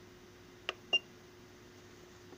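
Two button presses on a FeelTech digital function generator's front panel, about a quarter second apart past the middle, the second with a short high key beep.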